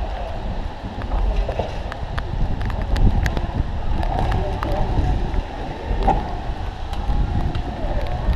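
Wind buffeting the camera microphone in a steady low rumble, with scattered light clicks and a few faint voices.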